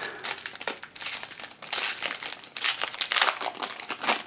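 Crinkling of a foil-wrapped trading-card pack being handled and worked open, a dense run of irregular crackles.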